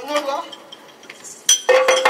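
Yakshagana tala, the small hand cymbals that keep time, struck in a quick run of ringing metallic clangs near the end, after a brief spoken phrase at the start.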